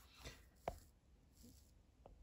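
Near silence, with a few faint clicks, the sharpest about two-thirds of a second in: fingers handling a plastic window box for a diecast car.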